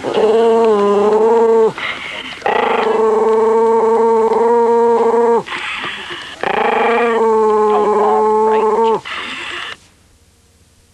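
Shaggy dog howling: three long, held howls, each wavering slightly in pitch, with short breathy gaps between them. The sound cuts off suddenly at the end.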